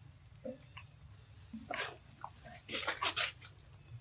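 Young macaque sucking milk from a small bottle's rubber teat: faint sucking and lip-smacking, with a quick run of sharp clicks around three seconds in.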